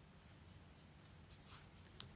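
Near silence: room tone, with a faint soft rustle about one and a half seconds in as yarn is drawn through crocheted petals by hand.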